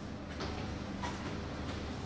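Faint light clicks and scrapes of a rusty metal door latch being worked out of its bore in the door's edge, twice in quick succession early on, over a low room hum.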